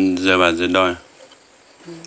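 A loud, steady insect drone with a wavering tone. It cuts off abruptly about a second in.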